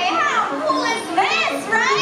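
A crowd with children's high-pitched voices calling and shrieking, the calls rising and falling in pitch.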